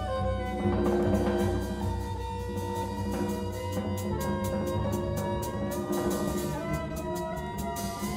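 Small jazz ensemble playing live: a bowed violin carries a sliding melody over double bass and a drum kit keeping time with steady cymbal ticks.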